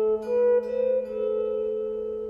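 Electric guitar (Epiphone) picking single melody notes in A minor: an A, then two slightly higher notes about a third and half a second in, over a held lower A, all left ringing and slowly fading.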